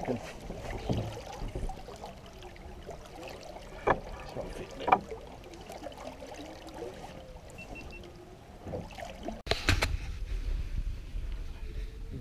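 Open-air background on a small anchored fishing boat: a steady low rumble of wind on the microphone with faint voices, and two sharp knocks about four and five seconds in. Nine and a half seconds in, the sound cuts to a louder low wind rumble.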